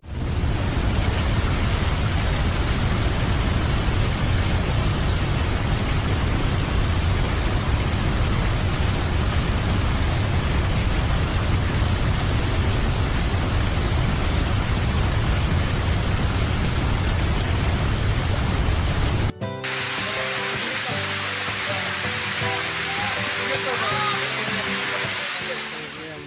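Waterfall pouring down a rock face into a pool: a loud, steady rush of water. About 19 seconds in it cuts suddenly to a thinner, hissier water sound with faint short pitched sounds over it.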